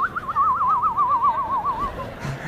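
A single high whistle-like tone with a fast, even warble of about seven wobbles a second, drifting slowly lower for nearly two seconds and then stopping: the classic science-fiction flying-saucer sound.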